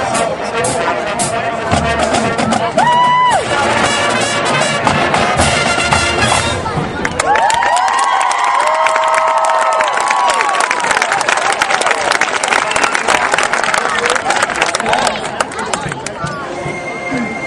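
Marching band brass and drums playing the close of a field show, with a short high brass note about three seconds in, ending on a long held chord. The crowd cheers and applauds over the final chord and keeps on to the end.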